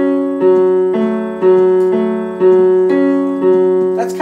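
Piano keyboard playing a slow, even pattern of about two notes a second: accented right-hand melody notes alternating with a softer left-hand F-sharp filled in between each one. The notes ring on, overlapping.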